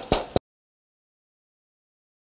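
A brief tail of a voice, then the sound track cuts out abruptly to dead digital silence less than half a second in.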